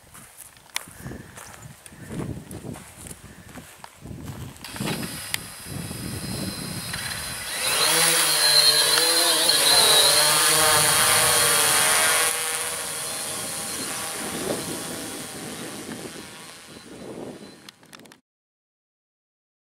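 Blade Chroma quadcopter's propellers spinning up and lifting it off the grass: a buzzing motor-and-prop whine whose pitch wavers as it climbs and hovers. It is loudest about halfway through, then drops somewhat as the drone moves off.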